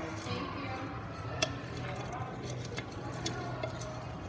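Bath salt with ground lavender and chamomile being stirred in a glass measuring jug, giving a low rustle and scattered light clicks against the glass, the sharpest about a second and a half in.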